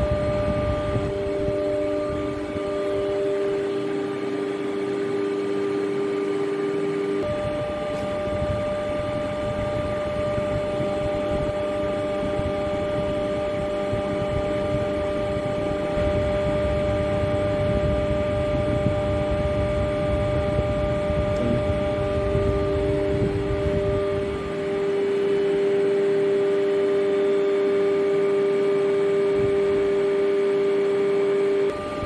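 Universal testing machine running with a steady hum of several held tones and a rough low rumble that grows stronger through the middle, as it presses a metal bar in three-point bending with the load climbing.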